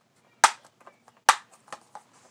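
Two sharp plastic clicks from a DVD case being handled, about half a second and a second and a quarter in, followed by a few lighter ticks.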